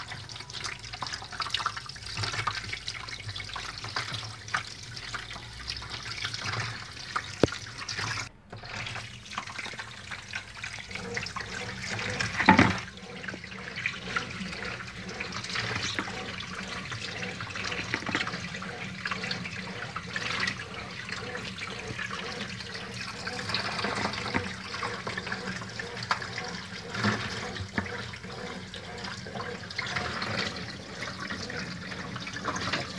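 Kitchen tap running and splashing into a metal tray as hands scrub pieces of cow's foot under the stream. A single sharp knock about twelve seconds in.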